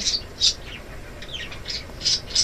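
A small bird chirping: a few short, high chirps, some falling in pitch.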